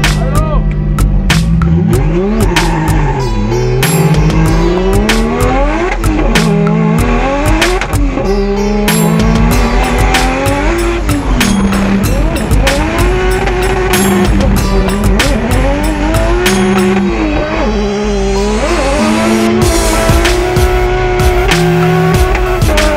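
Drift car engine revving hard, its pitch climbing and dropping again and again through the run, with tyre squeal from the car sliding. A background music track with a steady beat and bassline plays under it.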